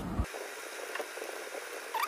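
Steady scratchy hiss with a few faint ticks: a small screwdriver tip scraping between solder joints on a circuit board, cleaning out debris so the joints will not short.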